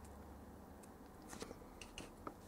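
Near silence: faint low room hum, with a few soft ticks in the last second.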